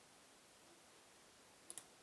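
Near silence: room tone, with two faint clicks in quick succession near the end.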